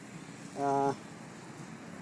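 A man's voice: a single short held hesitation sound, level in pitch, about half a second in, over faint steady outdoor background noise.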